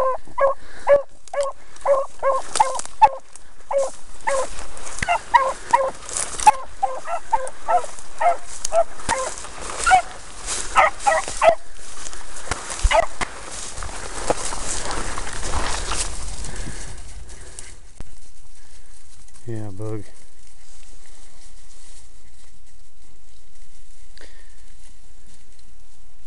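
Beagle barking in short, repeated yelps, about two a second, for the first dozen seconds: a hound giving tongue while trailing a rabbit's scent. Dry weeds and brush crackle against the microphone over the barking. Then the barking stops and a steady hiss remains.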